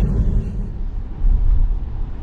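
Road and tyre rumble heard inside the cabin of a moving Tesla electric car, low and steady, with a louder stretch a little over a second in.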